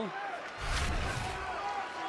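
Broadcast replay-transition whoosh with a deep rumble, starting about half a second in and lasting under a second, over the arena's crowd noise.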